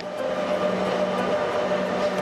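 Madrid Metro train at a station platform: a steady rumbling noise with a low hum and a higher steady whine running through it.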